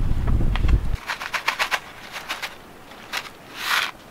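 A low rumble in the first second, then light crinkling clicks and a short rustle near the end as a child handles watermelon seeds and pushes them into potting soil in plastic pots.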